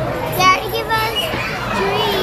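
A young child's high-pitched voice, with a short loud cry about half a second in, over other voices in the background.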